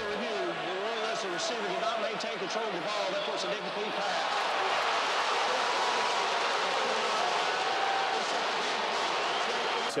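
A referee's replay-review announcement over a stadium public-address system, giving way about four seconds in to a steady wash of stadium crowd noise.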